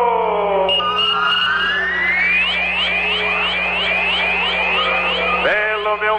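Electronic broadcast sound effect, the kind of jingle that comes before a time-and-score call: a falling sweep, then a long rising sweep, then rapid rising chirps about four a second, over a steady low hum that cuts off near the end.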